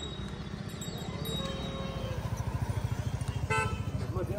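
A motor vehicle's engine running with a fast, even low pulse, and a short horn toot about three and a half seconds in.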